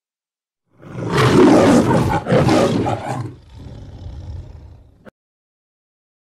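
A lion roaring: a loud roar in two surges, then a quieter low rumble that cuts off suddenly about five seconds in.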